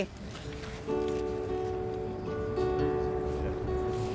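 A band instrument playing a few long, steady held notes, starting about a second in and changing pitch every second or so. It is an introduction setting the key for a group sing-along.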